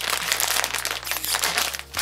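Plastic snack packet being pulled open by hand, its film crinkling in a dense run of crackles.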